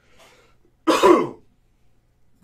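A man clears his throat once, a short loud burst about a second in, after a faint breath.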